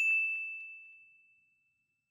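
A single bright bell ding from a notification sound effect. It strikes once with one clear tone and fades away over about a second and a half.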